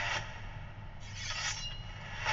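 The music drops out, and about a second later comes a brief rasping scrape lasting under a second.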